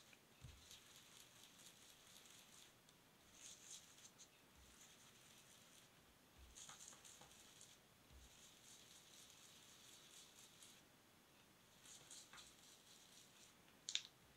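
Faint scrubbing of a foam ink-blending tool dabbed and rubbed over paper, blending ink in several short bouts, with a single sharp tap near the end.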